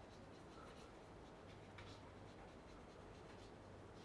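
Faint scratching and tapping of chalk writing on a chalkboard, over a low steady room hum.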